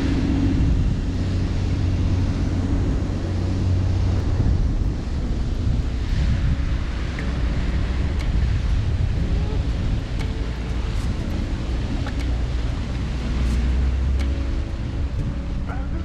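Heavy wind buffeting the microphone, a steady low rumble, with the tow boat's motor running underneath on open water.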